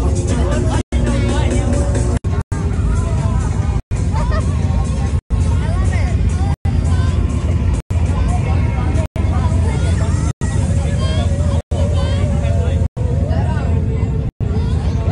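Steady low rumble of a boat under way, with people's chatter and music over it. The whole sound cuts out for an instant about every second and a half.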